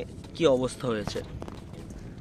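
A man's voice saying a word or two, then a quieter stretch of faint background noise for the last second or so.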